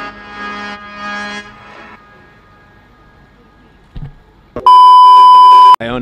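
Background music fading out over the first two seconds, then a short thump, then a loud, steady, single-pitched beep lasting about a second near the end, an edited-in bleep tone.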